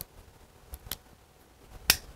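A self-adhesive paper cigar band being pried and peeled off a cigar by hand: a few faint clicks, with a sharper click near the end.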